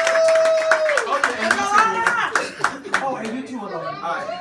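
A small audience clapping their hands along, with voices calling out over the claps; one voice holds a single long note for about the first second. The clapping grows fainter in the second half.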